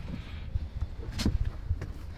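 Plastic lid of a 12-volt compressor chest fridge being handled, with one sharp click about a second in over a low, uneven rumble.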